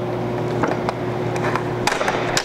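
A few light metallic clicks and knocks as a flange clamp is fitted and tightened around the blast gate's flanges, over a steady low hum.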